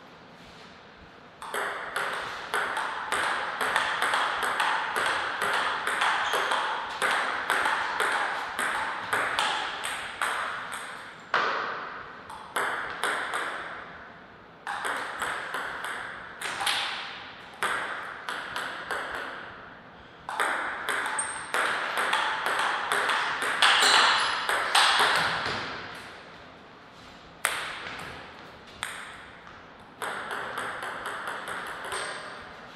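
A table tennis ball clicking off the bats and table in fast rallies: runs of quick, evenly spaced clicks, broken by short pauses between points.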